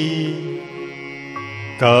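A voice singing a Sanskrit verse holds the end of a phrase, which fades into steady sustained accompaniment tones. The singing comes back loudly near the end.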